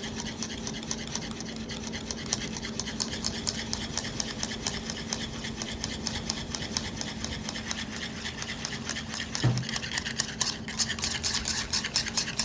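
Wire balloon whisk beaten fast by hand in a bowl, rapid, even, rhythmic strokes scraping and clicking against the bowl, whipping oil into an egg-based dressing as it thickens into an emulsion.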